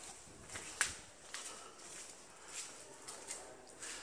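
Faint footsteps on a stone floor: a few irregular, sharp taps, with light handling clicks.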